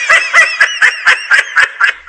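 High-pitched cartoon voice laughing loudly in a rapid run of short ha-ha pulses, about seven a second, stopping at the end.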